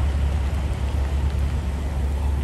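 Steady low rumble with an even hiss over it, typical of wind buffeting a phone microphone outdoors.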